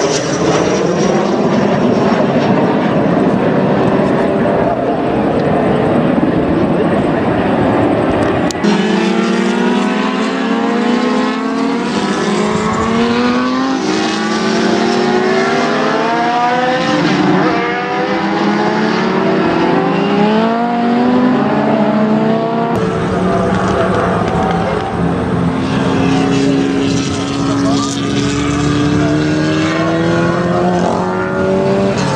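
Aircraft engines as display aircraft fly overhead, their pitch gliding up and down as they manoeuvre. The sound changes abruptly twice where separate clips are joined.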